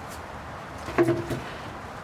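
A single sharp knock about halfway through, over a steady low background rumble.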